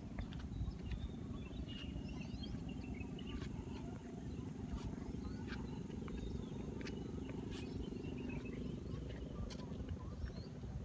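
Outdoor ambience: a steady low rumble with faint, high bird chirps and scattered small clicks.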